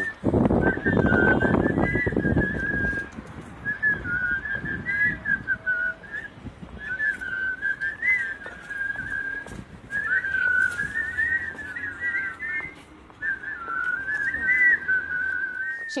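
A group of people whistling a catchy tune together while marching, in phrases of a few seconds with short breaks between them. A rough rumbling noise lies under the first couple of seconds.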